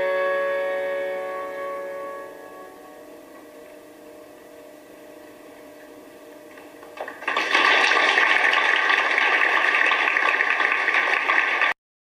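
The song's final chord rings out and fades away over the first few seconds. After a quiet pause, a live audience applauds from about seven seconds in, and the applause cuts off abruptly near the end.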